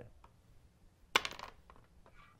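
A single sharp metallic clink with a short ring about a second in, from a telescoping metal pointer as it is put away.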